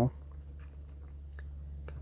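A steady low hum with a few faint clicks.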